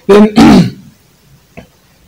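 A man clearing his throat: two quick, loud rasps together lasting under a second.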